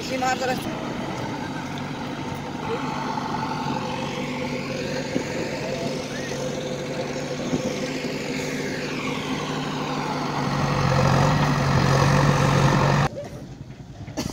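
Engine of a heavy vehicle running steadily, growing louder about three-quarters of the way through, then cutting off suddenly near the end.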